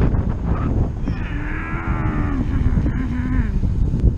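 Wind buffeting the camera microphone while riding downhill, a steady low rumble. About a second in, a drawn-out low-pitched tone joins it for roughly two seconds, sliding slightly down and then holding, from an unclear source.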